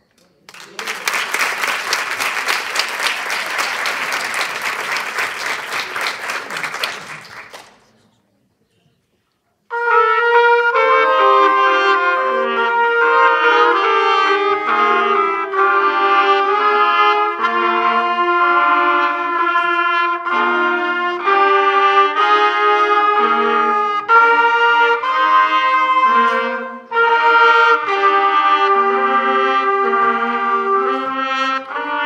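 Audience applause for about seven seconds, then a short silence, then a student trumpet ensemble starts a piece, playing in harmony. There is a brief break for breath near the end.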